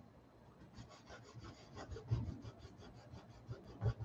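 Faint scratchy rubbing of a paintbrush's bristles over a canvas, a quick run of short strokes starting about a second in, as acrylic paint is blended lightly, dry-brush fashion. A soft low bump or two is heard among the strokes.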